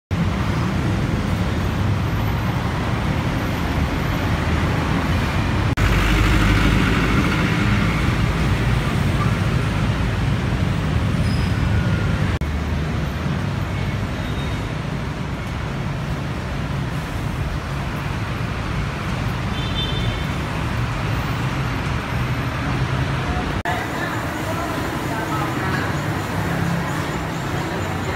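Steady city road-traffic noise, a continuous low rumble of engines and tyres. About four seconds before the end it cuts to a quieter indoor hubbub of voices.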